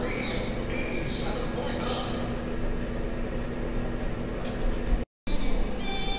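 Steady hum and room noise of a large, nearly empty indoor shopping mall, with faint distant voices. The sound drops out completely for a moment near the end as the video cuts to the next shot.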